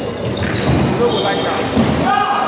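Table tennis rally: the ball knocking back and forth off the bats and table in a large hall, with voices in the background.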